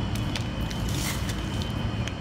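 Steady low rumble and hum of commercial bakery kitchen background noise, with a thin steady high whine and a few faint light clicks.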